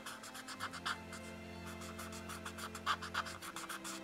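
A moistened paper shading stump (tortillon) rubbed back and forth over colored-pencil shading on paper to blend it: a quiet, rapid series of short scratchy strokes, several a second.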